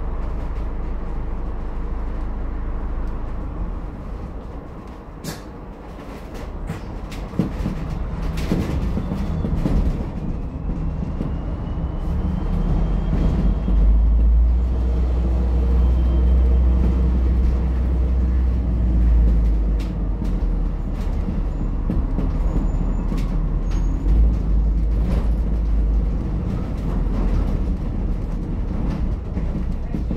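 Inside an ADL Enviro400H MMC hybrid double-decker bus on the move: a steady low drivetrain rumble with scattered rattles from the cabin. The rumble dips briefly a few seconds in, then a faint rising whine comes in around ten seconds in and the rumble grows louder and heavier as the bus picks up speed.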